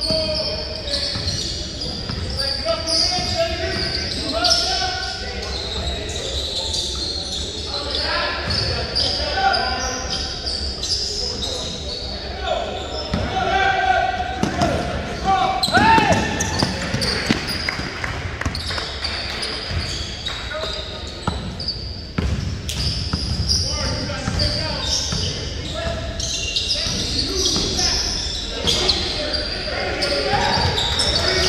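A basketball being dribbled on a hardwood gym floor during a game, with players' voices calling out, all echoing in a large hall.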